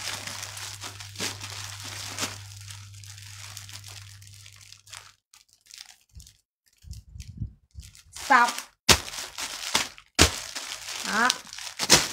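Plastic bags around folded clothes crinkling and rustling as they are handled and opened, over a steady low hum that stops about five seconds in. A few sharp knocks follow in the second half.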